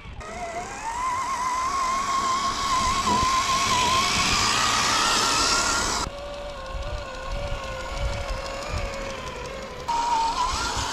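The electric motor and gear drive of a 1/10-scale RC crawler whining as it drives, the pitch climbing as it picks up speed, with a rushing noise of tyres and ground under it. About six seconds in the sound cuts sharply to a lower, steadier whine.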